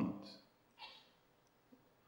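A man's lecturing voice trailing off at the end of a phrase, then a pause of near silence broken only by one faint short noise just under a second in.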